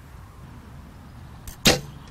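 A single recurve bow shot about one and a half seconds in: a faint snap of release followed at once by a loud, sharp thwack as the arrow strikes a straw target bale a few metres away.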